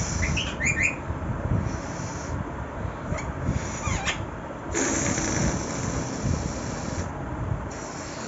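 Rose-ringed parakeet giving a few short, quick chirps about half a second in, with fainter calls around three and four seconds, over a steady low rumble.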